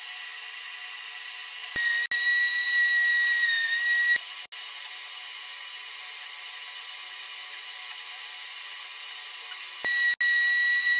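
Random orbital sander with a dust-extraction hose running, a steady high whine whose pitch changes at two brief cuts, about two seconds in and about four and a half seconds in.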